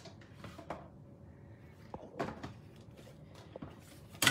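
Plastic platforms and an embossing folder being handled and pulled out of a hand-crank die-cut and emboss machine: a few light, scattered knocks and clatters of plastic.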